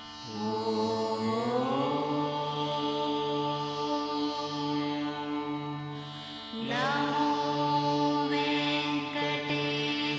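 Devotional chanting in long held notes over a steady drone, in two phrases, each opening with an upward slide in pitch, the second about two-thirds of the way through.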